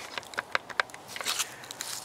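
Red plastic barbecue lighter being handled: a string of small, irregular clicks and taps of fingers and plastic.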